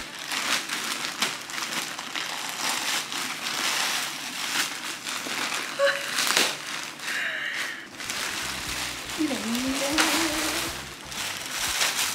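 A plastic poly mailer bag being torn open and crumpled by hand, with dense crinkling and crackling of the plastic as the wrapped items are pulled out.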